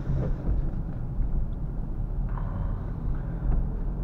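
Inside the cabin of a Renault Clio IV with the 1.5 dCi four-cylinder diesel, engine and tyre noise while driving slowly through town. It is a steady low rumble.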